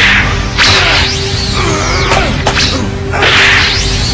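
Cartoon whoosh and whip-crack sound effects of a fighter darting through the air at high speed, several sharp swishes in quick succession.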